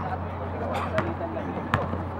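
Basketball bouncing on a hard outdoor court as it is dribbled: two sharp bounces, about a second in and again shortly before the end, over a steady low hum.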